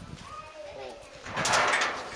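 A bird coos faintly, then a short rush of hiss lasts about half a second, starting about a second and a half in.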